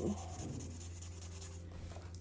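Marker pen strokes scratching on paper as boxes of a printed chart are coloured in, over a steady low background hum.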